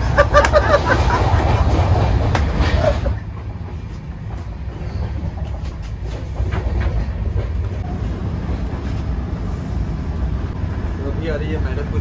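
Steady low rumble of a moving passenger train heard from inside the coach, with a few light clicks. Voices and laughter sit over it for the first few seconds.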